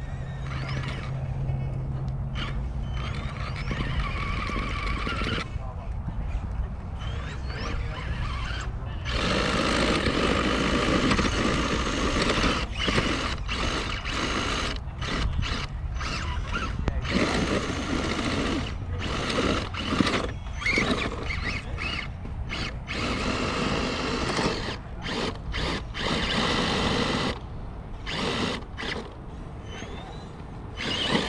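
Whine of an RC scale crawler's electric motor and gears while it climbs over rocks. The whine comes in many short stretches that start and stop, as the throttle is worked on and off.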